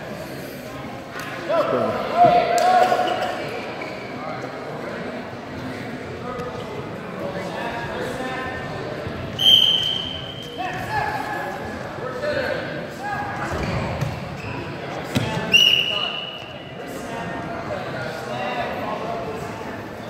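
A referee's whistle blown twice, two short, shrill blasts about six seconds apart, over shouting voices in an echoing gym.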